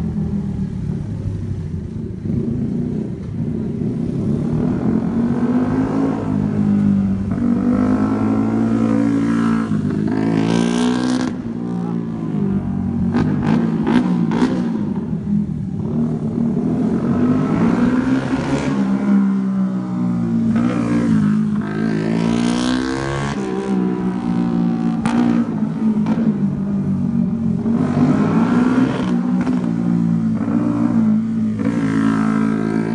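Yamaha Sniper 135 underbone motorcycle's single-cylinder four-stroke engine revving up and falling back over and over as the bike accelerates and slows through tight turns, its pitch rising and dropping every few seconds.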